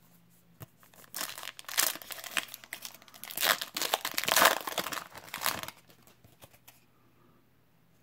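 A foil trading-card pack wrapper torn open and crinkled by hand in a run of scratchy crackles, stopping short of six seconds in.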